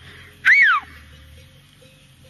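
A short, loud whistle about half a second in, sweeping up and then falling steeply in pitch: a shepherd's whistled command to a working border collie herding sheep.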